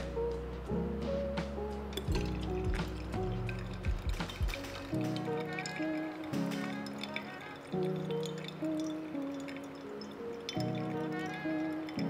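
Background music: soft sustained chords that change every second or so.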